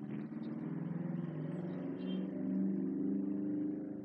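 A vehicle engine running steadily, its pitch wavering slowly up and down.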